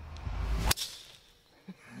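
A golf club swishing through a full tee-shot swing, building to a sharp crack as the clubhead strikes the ball less than a second in.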